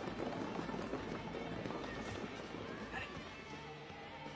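Indistinct voices and movement in a busy room, with no clear words. Music comes in softly near the end.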